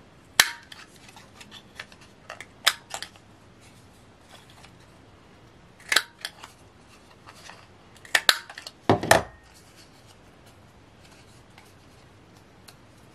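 Handheld corner rounder punch snapping through the corners of cardstock tags: about half a dozen sharp clicks, irregularly spaced, with light paper handling between them and a heavier knock near the end.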